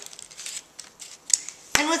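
Soft rustling and light clicks of folded card stock as fingers press the layers of a paper gift bow together, with a sharp click near the end.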